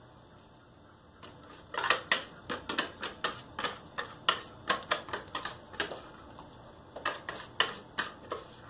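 Stand mixer's wire whisk attachment knocking and scraping against the mixing bowl as cake batter is pushed out of it: a run of irregular sharp clicks, several a second, starting about two seconds in, pausing briefly and coming back near the end.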